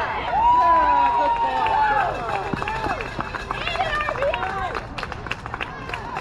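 Players and spectators yelling and cheering as a run scores on a base hit, several voices overlapping, with one long drawn-out shout near the start. Scattered sharp claps come toward the end.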